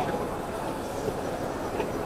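Steady background din of a crowded trade-show hall, with indistinct voices mixed in.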